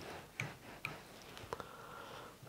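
Three faint, sharp clicks from small fly-tying tools being handled at the vise, the first two about half a second apart and the third about a second in.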